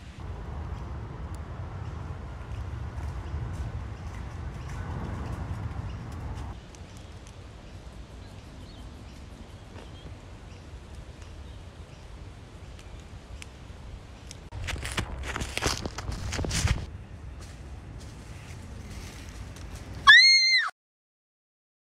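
A low outdoor rumble, like wind on the microphone, that drops about six seconds in. Near the end comes about two seconds of footsteps crunching through dry fallen leaves.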